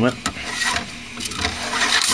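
Plastic 3D-printer filament spool being turned by hand to unwind the old ABS filament: irregular clicks and plastic rubbing.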